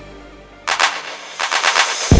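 Electronic dance music in a breakdown: the bass dies away to a lull, then two runs of rapid, sharp, noisy percussive hits, the first about two-thirds of a second in and the second just before the end, building back toward the beat.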